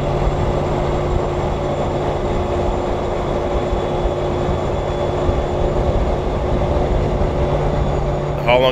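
Steady engine drone and road noise of vehicles cruising at highway speed, with a low hum held at one constant pitch throughout.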